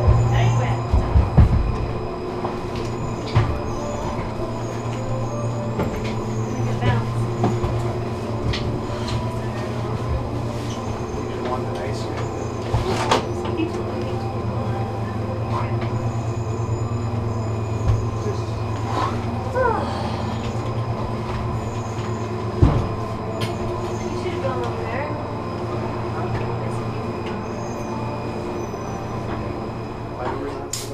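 Inside a Leitner 3S gondola cabin being carried slowly through the station: a steady low hum from the station machinery, with a few knocks in the first two seconds, scattered clicks and clunks, and a few brief squeals.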